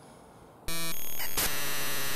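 A sudden buzzy tone starts about two-thirds of a second in and turns, after under a second, into a steady loud hiss like radio or TV static.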